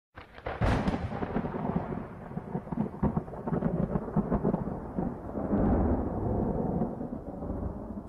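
Thunder sound effect: a sharp crack about half a second in, then a long rolling rumble with crackles that eases off near the end.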